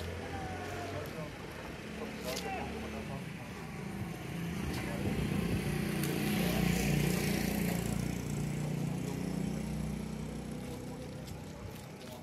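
Many men talking at once, no words clear, while a vehicle's engine runs close by; the engine grows louder in the middle and then eases off.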